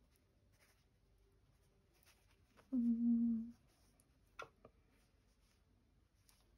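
Quiet hand sewing: faint rustles of fabric and embroidery thread being handled, broken a little before halfway by a drawn-out, hummed "let" in a woman's voice, then two small clicks about a second later.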